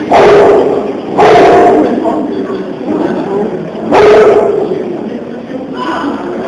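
Jaguars giving three loud, short, harsh calls at close range: two about a second apart at the start, a third nearly four seconds in, each dying away within about a second.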